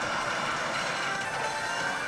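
Electronic music with a thin steady high tone running through it and no speech.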